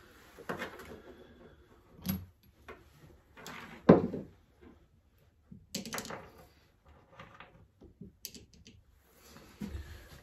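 Metal engine parts being handled and set down on a plywood workbench: scattered clunks and clicks, the loudest a sharp knock about four seconds in.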